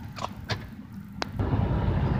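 Car cabin noise while driving: low engine and tyre rumble heard from inside the vehicle, with a few light clicks early, and a louder rumble from about a second and a half in.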